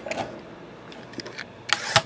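Light handling of a shrink-wrapped metal card tin, with a short crinkle of plastic wrap near the end.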